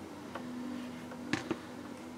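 A few light clicks and taps of hand tools being handled on a workbench mat, the two clearest close together a little past the middle, over a faint steady hum.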